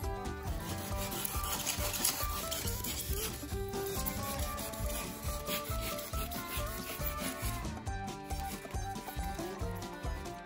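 Retractable utility knife blade cutting and scraping through 1.5-inch pink polystyrene insulation foam, rounding off the corners of a foam tower, with background music.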